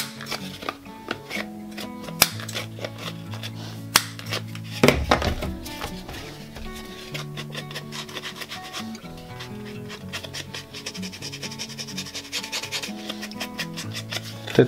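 Background music playing a slow tune, over the rubbing and dabbing of an ink-blending tool on a paper card, with sharp taps now and then, the loudest about two, four and five seconds in.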